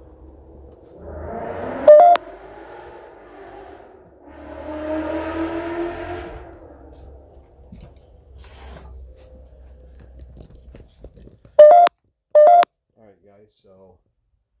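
Three short, loud electronic beeps: one about two seconds in and two close together near the end, with quieter, indistinct voice-like sounds in the first half.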